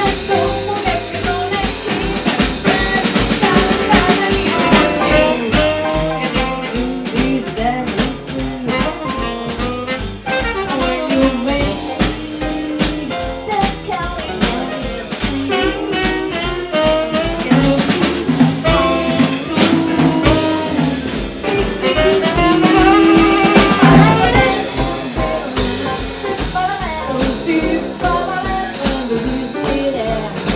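Live small jazz combo playing: tenor saxophone carrying a melodic line over piano, bass and a drum kit keeping a steady beat.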